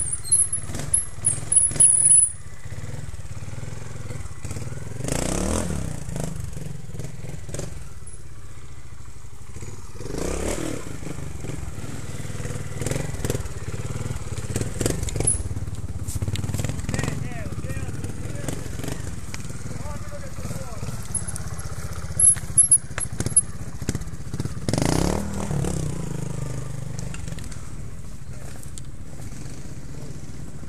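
Trials motorcycle engines running, with a steady low drone throughout and short rev bursts that rise and fall about 5, 10 and 25 seconds in as riders climb the rocky section. A few sharp, loud spikes come in the first two seconds and again a little past the 22-second mark.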